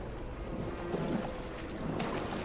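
Low, muffled rumbling ambience from a film soundtrack, with a faint steady hum over it.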